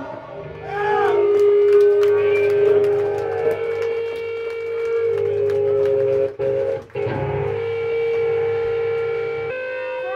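A punk band's song stops abruptly, leaving an electric guitar droning through its amplifier as a steady held tone with overtones. The tone cuts out briefly twice, a little after six and seven seconds in.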